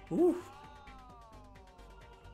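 A short voiced exclamation, a quick rise and fall in pitch like a 'wow', over background music with a steady beat. A thin tone then glides slowly down in pitch.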